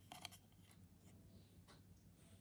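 Near silence with faint handling sounds: a clear plastic candle mould being turned in the hands, giving a few light clicks and rubs in the first half-second and once more near the end.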